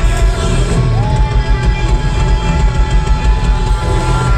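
Live rock band with a horn section playing loudly, with heavy bass. About a second in, one high note is held steady for about three seconds.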